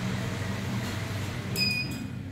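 An elevator's touchless sensor floor button gives one short, high beep near the end as the lobby-floor call registers. A steady low hum sounds underneath.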